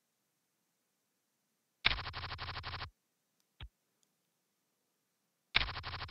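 PokerStars client's card-dealing sound effect, a quick rattle about a second long, played twice as new hands are dealt, with a single short click between them.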